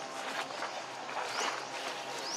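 Dry fallen leaves crackling and rustling as young macaques shift about on them, with a short high rising chirp about one and a half seconds in.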